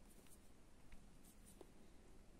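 Near silence, with faint light rustling and a few soft ticks as a fine needle and thread are handled and pulled while knotting a small needle-lace loop.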